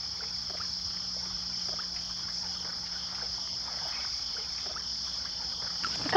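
Steady high-pitched insect chorus, with faint scattered ticks and small splashes of water.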